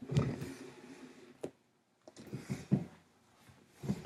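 Trading-card packaging being handled: rustling with a sharp click about a second and a half in and a few short knocks later on.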